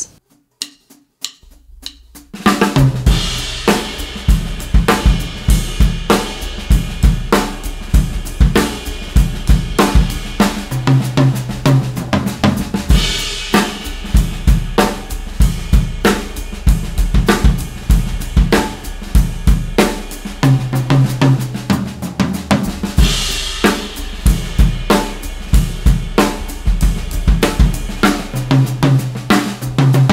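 Pearl President Deluxe drum kit with Soultone cymbals, played after about two seconds of light taps as a run of paradiddle-based fills moving around the snare, toms and cymbals, with the right hand accented and the left hand ghosted. Bass drum runs underneath, and cymbal crashes come about thirteen seconds in, again about ten seconds later, and near the end.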